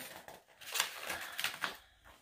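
Paper pages of a large picture book being turned and handled: a run of short rustles over about a second.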